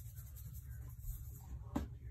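Quiet handling sounds as onion powder is shaken from a spice container onto a raw turkey, with one light tap near the end.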